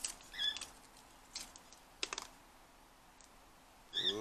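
Light clicks and rustles of a USB-C charging cable being uncoiled and pulled out by hand. A pet bird gives a short chirp about half a second in and again near the end.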